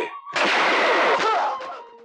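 Film gunfire sound effect: a loud blast starting about a third of a second in, holding for about a second and then fading.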